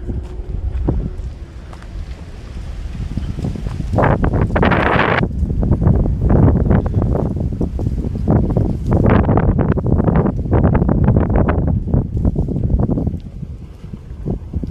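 Wind buffeting the camera microphone in gusts, loudest about four seconds in, with a run of short crackles through the second half.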